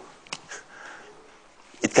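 A man's short sniff with a small click in a pause between words, then his speech resumes near the end.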